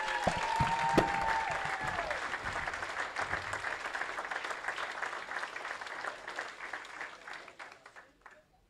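Banquet audience applauding an inductee's introduction, with some cheering near the start; the clapping fades away gradually toward the end.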